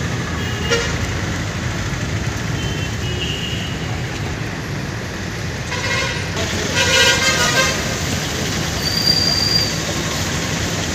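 Street traffic rumble with vehicle horns honking twice, about six and seven seconds in, and a short high-pitched tone near the end.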